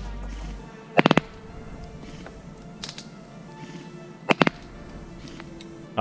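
Background music, cut through twice by short bursts of three or four sharp cracks, about a second in and just past four seconds in; the bursts are the loudest sounds. They are the Specna Arms SA-B12 airsoft electric gun firing.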